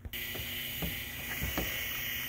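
Outdoor woodland ambience: a steady, high hiss-like background that starts at a cut, with four light knocks spaced about half a second apart.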